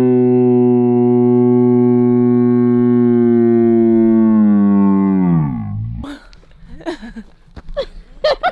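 A woman's voice holding one long, low sung note for about five seconds. The pitch slides down as it dies away. A few short vocal sounds and a little laughter follow.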